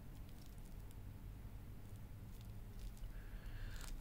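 Faint handling noise of a wristwatch with a leather strap and its protective plastic film being turned over in the hands: a few soft ticks and rustles over a low room hum.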